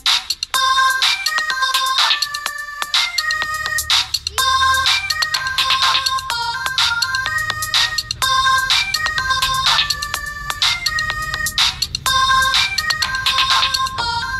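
Electronic beat: a ringtone-like synth melody of short notes over a steady pattern of drum hits, with a bass line coming in about three and a half seconds in.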